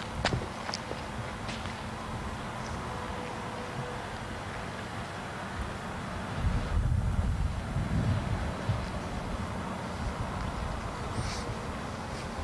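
Wind buffeting a camcorder's microphone outdoors, with stronger low rumbling gusts about halfway through. Faint footsteps and a steady hum from the camcorder lie underneath.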